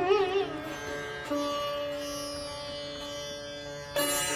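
Solo sitar playing Hindustani classical music: a phrase of notes bent up and down by pulling the string, then a single plucked note about a second in that rings on and slowly fades.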